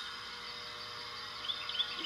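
Steady outdoor background noise with a faint mechanical hum, and a few faint bird chirps about one and a half seconds in.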